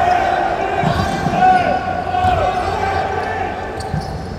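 A basketball bouncing a few times on a hardwood court, with sneakers squeaking on the floor and players calling out in a large hall.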